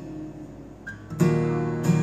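Acoustic guitar strummed without singing. A chord rings softly at first, then hard strummed chords come in suddenly a little past halfway, much louder.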